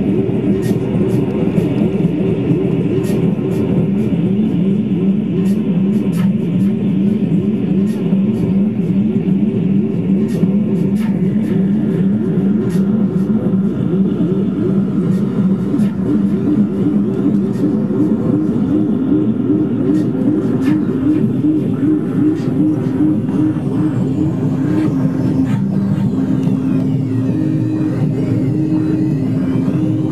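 Electronic music from a reactable tabletop synthesizer: a loud, buzzy low drone that flutters rapidly, with scattered sharp clicks. About two-thirds of the way through, swooping high glides come in, along with a low tone stepping back and forth between two pitches.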